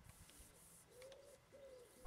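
Near silence with a faint bird call: two short, low, arched notes, the first about a second in and the second half a second later.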